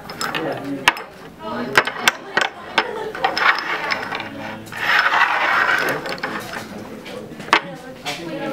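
Small cups clacking and sliding on a wooden tabletop as they are shuffled in a shell game: a string of sharp knocks, several in the first three seconds and one more near the end.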